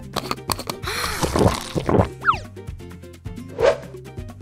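Cartoon sound effects over light background music: a noisy squishing sound about a second in, then a quick falling swoop and, near the end, a rising swoop.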